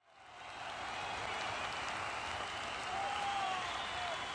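Crowd applause and cheering, fading in over the first second and then holding steady, with a few faint rising and falling cries in it.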